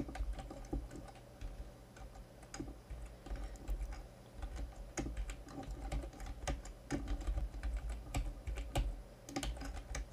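Typing on a computer keyboard: a run of irregular, fairly quiet key clicks.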